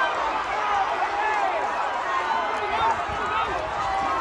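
A large crowd of people talking at once, many voices overlapping in a steady murmur.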